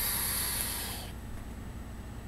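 Air rushing through a Velocity rebuildable dripping atomizer with its airflow fully open as a sub-ohm vape is drawn on, its 0.22-ohm coil firing at 60 watts: a breathy hiss of about a second and a half that fades out.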